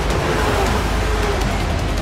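Porsche 911 GT3 Cup race car's flat-six engine running at speed, heard from inside the cockpit as a steady engine note over loud road and wind noise.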